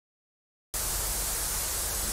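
Dead silence, then about three-quarters of a second in a loud burst of even static hiss that starts abruptly and holds steady: an edited-in static noise effect over the cut.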